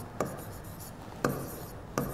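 A pen writing by hand on a glass-fronted board. It touches down twice with a sharp tap, and each tap is followed by a short scratchy stroke.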